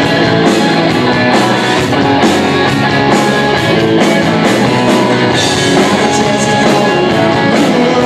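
Three-piece rock band playing live: loud electric guitar over bass and drums keeping a steady beat.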